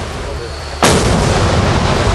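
Floodwater rushing through a breached concrete check dam: a loud, dense rush with a deep rumble, which jumps suddenly louder and fuller a little under a second in.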